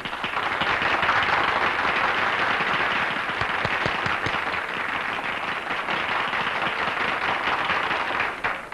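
A roomful of people applauding, a dense steady patter of hand claps that eases a little over the later seconds.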